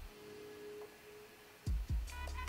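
Electronic background music in a quiet breakdown: a single held tone with the bass dropped out, stopping about one and a half seconds in, then two deep kick-drum beats near the end as the beat comes back.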